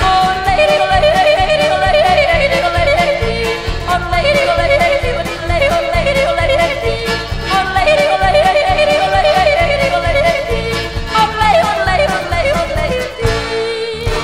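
A woman yodelling: a wordless voice flipping rapidly between low and high notes in long runs of quick leaps, over instrumental accompaniment with a steady beat. The yodel stops shortly before the end, leaving the accompaniment playing.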